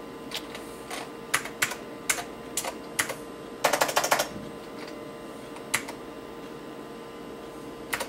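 Keystrokes on the Acer 910's keyboard: scattered single key clicks, then a quick run of about ten keys about four seconds in, and one more a little later. A steady faint hum runs underneath.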